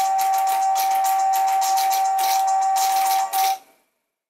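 Tomy Pop'n Step Star Wars dancing figures playing a tinny electronic tune that ends on one long held note over a fast rattling beat. The music cuts off suddenly near the end.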